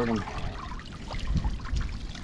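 Water pouring and trickling out of a lifted cage of live oysters and splashing into the water below, with the oysters squirting jets of water.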